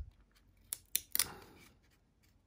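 A stack of 1997 Topps baseball cards being shuffled through by hand. Three sharp card snaps come about a second in, each followed by a short rustle of cardboard sliding over cardboard.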